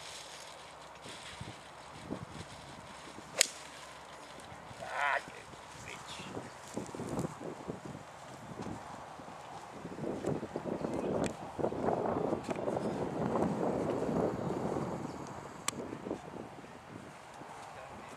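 A golf club striking a teed ball in one sharp crack about three seconds in. A short wavering whistle follows, then several seconds of rustling noise.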